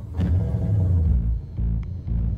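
An Audi car engine starting with a deep rumble, then rock music with a pulsing bass guitar comes in about a second in, its bass beat about twice a second.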